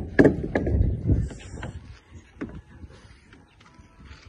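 A quick run of knocks and clicks with a low rumble in the first second or so, then a few scattered clicks.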